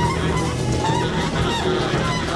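Spiritual jazz recording: a horn plays short sliding phrases over bass and drums.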